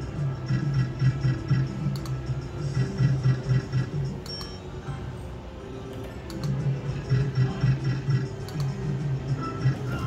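Novoline Book of Ra Classic slot machine playing its electronic free-spins music, a pulsing low melody with higher tones over it, with a few short clicks as the reels run.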